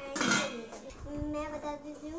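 Stainless steel cookware clanking as a lid and steamer plate are handled: a loud metal clank just after the start, then lighter knocks of steel on steel.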